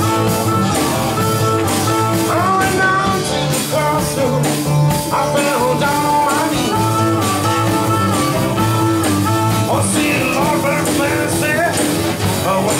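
Live blues band playing with a steady beat: strummed acoustic-electric guitar with notes bending in pitch, upright double bass, drum kit and tambourine.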